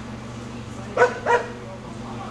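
A small dog barking twice in quick succession, two short sharp barks about a third of a second apart.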